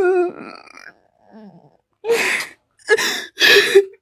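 A woman sobbing: a wavering, drawn-out cry trails off at the start, then faint breathy catches of breath, then two loud sobs in the second half.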